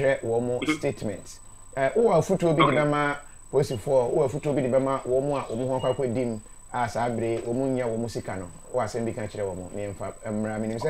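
A man speaking continuously, with a faint steady high-pitched whine behind his voice.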